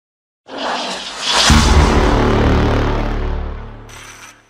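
Intro logo sting: a rising whoosh builds for about a second, then a heavy low impact hit lands and rings on in a deep rumble that fades over about two seconds, with a short bright shimmer near the end.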